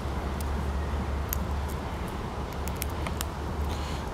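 A steady low rumble, with a few faint, sharp little clicks scattered through it as a red squirrel picks in-shell pine nuts from an open palm.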